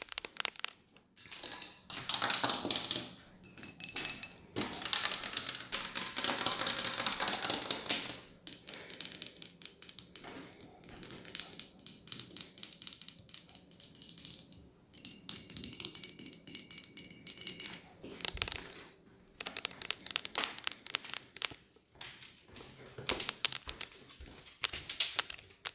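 Long fingernails tapping and scratching fast on Christmas decorations, among them a white candlestick, in quick runs of clicks broken by several brief pauses.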